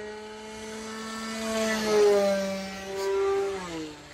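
Electric motor and propeller of a 1:8 scale Spad VII RC aircombat model on a 6S battery, running at speed in flight as a steady whine. It grows louder about two seconds in and again a second later, then drops in pitch near the end.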